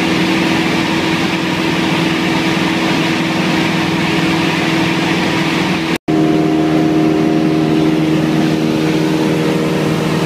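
Light single-engine propeller plane's engine droning steadily, heard from inside the cabin in flight. It drops out for a moment about six seconds in, then a similar steady drone resumes with a slightly different pitch.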